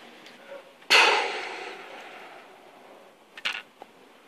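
A sudden sharp burst about a second in, fading away over about two seconds: the sound for a crossbow bolt shot into a tyre and puncturing it.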